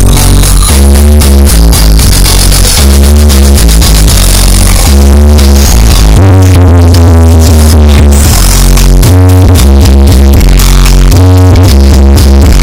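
Loud electronic dance music with a heavy bass line, played through a large street sound system.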